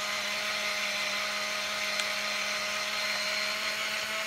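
Olympus Infinity Stylus Zoom 70 35mm compact camera's built-in motor rewinding the film into its cartridge, a steady whine, with one faint click about halfway through.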